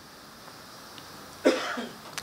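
Faint steady room hiss, then about one and a half seconds in a man's single short cough into a handheld microphone.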